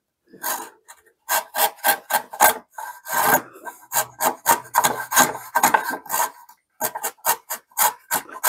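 Cheap shoulder plane pushed across pine end grain in quick, short strokes, about three a second, with a brief pause near the end. The blade is scraping off dust rather than peeling shavings from the end grain.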